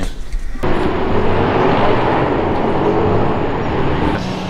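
Road traffic noise, a steady rush of passing cars, which starts abruptly about half a second in.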